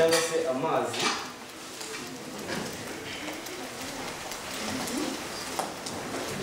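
Stainless steel pots and utensils clinking and knocking on a gas hob as they are handled: a few scattered knocks over a steady low hiss.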